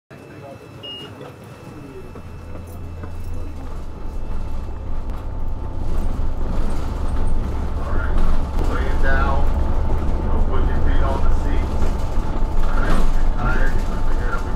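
Low engine and road rumble heard from inside a moving city bus, fading in over the first few seconds and then holding steady.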